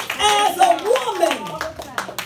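A woman's voice through a microphone, calling out with long rising and falling pitch glides, with repeated hand claps in the room, one sharp clap at the start and another near the end.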